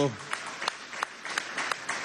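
Light applause from a small audience, with separate hand claps standing out at an irregular pace.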